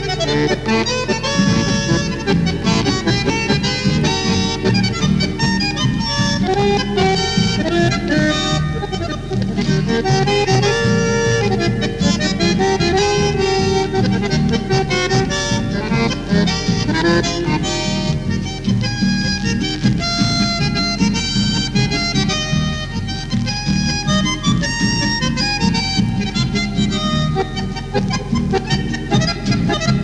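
Instrumental chamamé led by accordion, playing continuously with a quick, steady rhythm over bass accompaniment.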